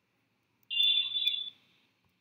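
A single high-pitched beep, steady and a little under a second long, starting about two-thirds of a second in.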